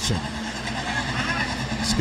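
Engines of a pack of dirt-track hobby stock race cars running together as a steady drone.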